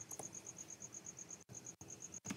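Faint keyboard typing over a steady high-pitched pulsing, about eight pulses a second.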